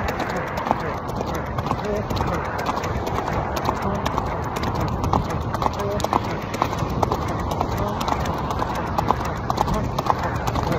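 Hoofbeats of a ridden horse moving over sand, heard from the saddle.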